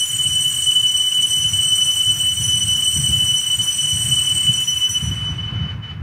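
Altar bells rung at the elevation of the chalice after the consecration: a sustained, high-pitched metallic ringing that holds steady and dies away near the end, over low room rumble.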